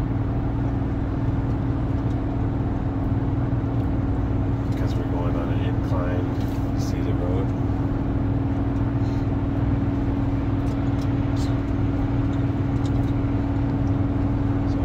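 Cabin sound of a GMC Sierra 1500's 6.2-litre V8 pulling steadily in sixth gear at light throttle up a grade while towing a heavy travel trailer, blended with road and tyre noise. The drone is even throughout, with no shift or change in engine speed.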